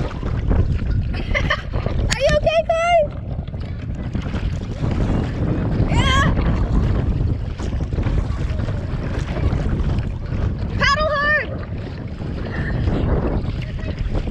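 Strong wind buffeting the microphone in a constant low rumble while a kayak paddle dips and splashes through choppy lake water. A few short, high, wavering voice cries cut through about two, six and eleven seconds in.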